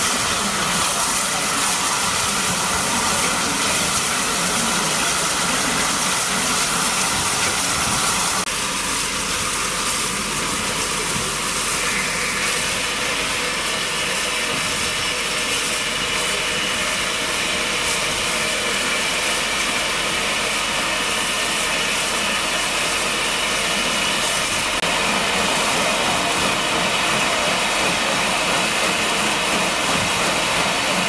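Standing steam locomotive 34052 Lord Dowding, a rebuilt Bulleid light Pacific, hissing steadily as it lets off steam. The hiss changes tone about eight seconds in and again about twelve seconds in.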